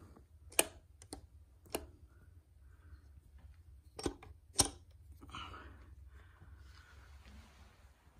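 A handful of sharp metal clicks as the shift forks and gears of an open Mitsubishi DCT470 dual-clutch transmission are moved by hand, with a short rustle about five seconds in.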